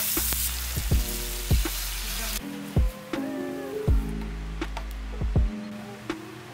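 Pork belly, onion and tomato sizzling in a frying pan while being stirred with a metal ladle; the sizzle stops abruptly about two seconds in. Background music with a steady beat plays throughout.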